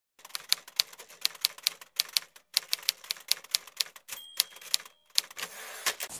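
Typewriter keys clacking in quick, irregular strokes, likely an intro sound effect. About four seconds in a brief ringing tone sounds, like the typewriter's end-of-line bell, followed by a short sliding noise near the end.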